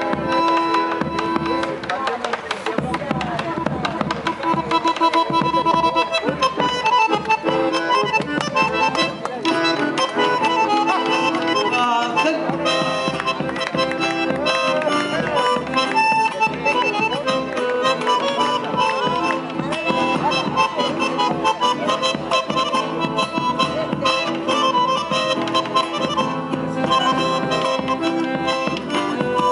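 Argentine folk trio playing a chacarera: a bandoneon carries the melody over an acoustic guitar and a bombo legüero drum beating the rhythm.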